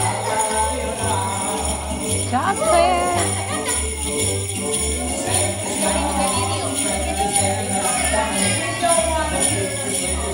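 Handheld jingle bells shaken by small children, a steady jingling over music with an even, bouncing bass line. Someone laughs about five seconds in.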